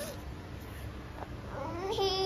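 A toddler's short whiny cry starting about a second and a half in, its pitch bending up and then down, after a quiet stretch.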